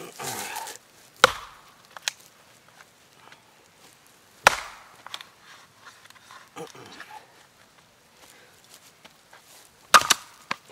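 Small camp axe with an epoxy-coated boron steel head chopping into a log on a chopping block: sharp blows about a second in, around four and a half seconds in, and the loudest at the very end, with a lighter knock in between.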